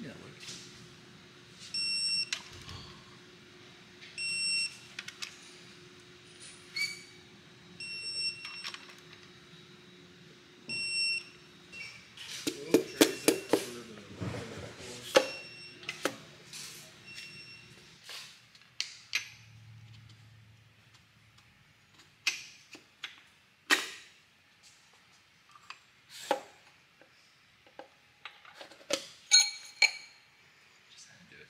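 Engine-assembly workshop sounds: four short electronic beeps about three seconds apart, then a burst of metallic clatter. Scattered sharp taps follow as pistons are driven into the aluminium LS3 block's bores through a ring compressor with a mallet.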